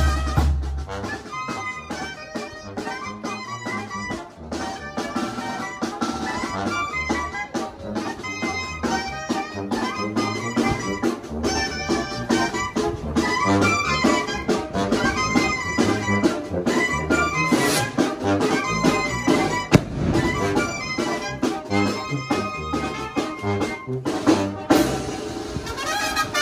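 Brass band music, trumpets and trombones over a steady drum beat.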